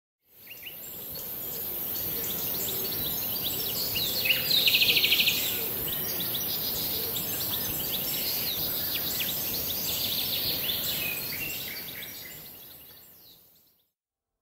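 Outdoor ambience of birds chirping and twittering over a steady high hiss. A rapid trill about four to five seconds in is the loudest part. The ambience fades in at the start and fades out near the end.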